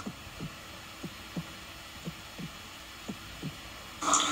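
A faint, low thumping beat: pairs of short thumps, each dropping in pitch, about one pair a second, like a heartbeat rhythm, over a low steady hum.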